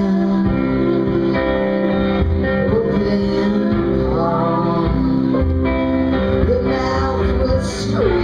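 Live band music: a woman singing over electric guitar and sustained chords, at a steady loud level.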